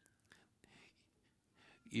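A man's faint breaths and soft mouth noises during a pause in his talk, then his voice comes back near the end with the word "you".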